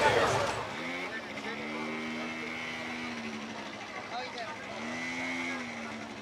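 A motor vehicle's engine running in a busy street. Its hum rises in pitch about a second in, holds steady, then drops, and rises again briefly near the end.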